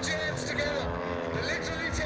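Model aircraft engines buzzing in flight, their pitch gliding up and down as the planes pass, over the voices of a crowd.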